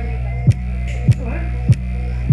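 Bass-heavy music played through a loudspeaker woofer close to the microphone: a steady low drone with a kick-drum thump about every 0.6 seconds, three times, under a faint melody.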